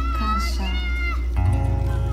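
A high, gliding cry that rises, holds and falls over about a second. About one and a half seconds in, an amplified acoustic guitar chord is struck and rings on.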